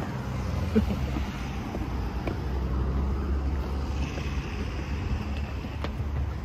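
Steady low rumble of wind and handling noise on a handheld camera's microphone, muffled by clothing rubbing against it, with a short laugh about a second in.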